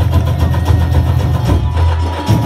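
Carnival batucada drum section playing, the bass drums sounding as a steady low rumble with few separate strokes.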